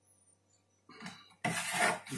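Chef's knife handled against a plastic cutting board: a faint contact about a second in, then a louder scrape near the end as the blade moves over the board.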